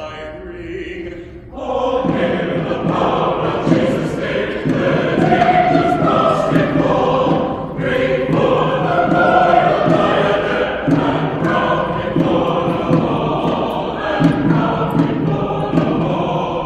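Church choir singing, softly at first and then swelling to full voice about two seconds in, with a brief break in the phrase around eight seconds.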